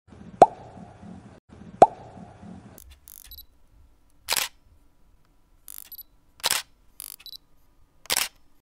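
Intro sound effects: two sharp plops with a quick rising pitch, about a second and a half apart, then two short hissing swooshes with small clicks between them.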